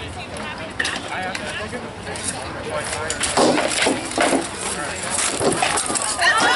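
Rattan swords striking shields and armour in SCA armoured combat: an irregular run of sharp knocks and cracks, the heaviest a little past halfway, with onlookers' voices behind them.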